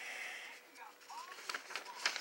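Faint rustling of a paper store circular being handled, with a few soft clicks near the end.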